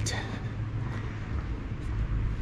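Street ambience: a steady low hum of city traffic under an even background hiss.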